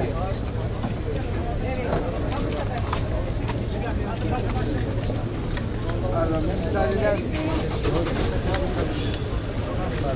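Several people talking over one another, with a steady low hum underneath.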